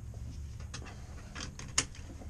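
A few sharp mechanical clicks and rattles inside a vehicle cab, the loudest one near the end, over a low steady rumble.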